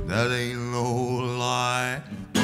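A low male singing voice holds one long note, with a slight waver, and breaks off just before the end.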